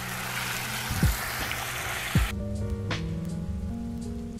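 Water from an outdoor shower splashing off a wet dog onto concrete, cutting off suddenly about two seconds in. Background music with a soft beat plays throughout.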